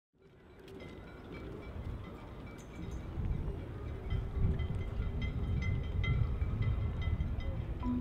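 Low wind rumble with light, irregular metallic chiming pings, fading in from silence over the first few seconds. A marimba tune comes in at the very end.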